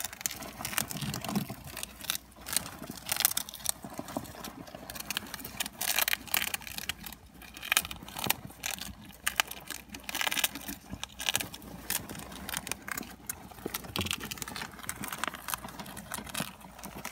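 A group of hamsters gnawing on a cracker together: a fast, irregular run of small crunches and clicks, with the rustle of wood-shaving bedding as they jostle.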